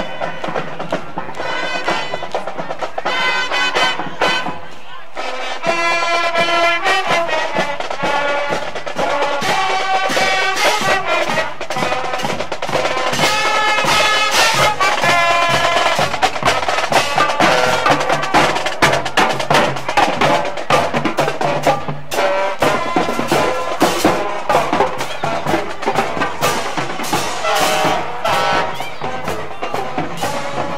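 Marching band playing a tune on saxophones, clarinets and brass with sousaphones, with drums keeping a steady beat. In the last several seconds the drum strokes stand out more sharply.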